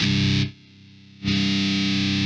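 Distorted electric guitar chord played through a volume pedal: it sounds loud, is cut right down after about half a second while still ringing faintly, then is brought back up to full level about a second in and held.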